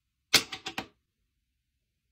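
Plastic jar lid set down on a wooden desk: a sharp clack followed by three quick, lighter rattles as it settles, all within about half a second.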